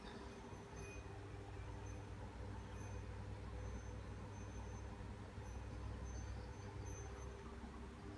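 A faint steady low hum of background noise, with scattered faint, brief high-pitched chirps and no distinct sound events.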